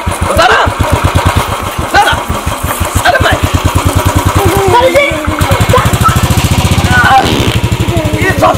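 Royal Enfield single-cylinder motorcycle engine idling with a steady, quick beat of low firing pulses; from about five and a half seconds in the pulses come faster for a second or so as it is revved, then settle back. Voices shout over it.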